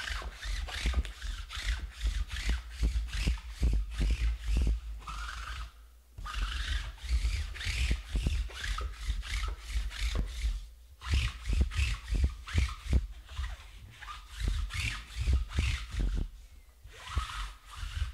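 Close handling noise from hands working at a tabletop: runs of rubbing and scraping, thick with small clicks and low thumps, that stop briefly three times.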